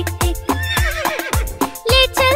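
Instrumental backing of a children's song with a steady drum beat, and a horse whinny sound effect about halfway through.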